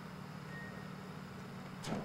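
Steady low background hum of an outdoor home-video recording, with one sharp knock near the end.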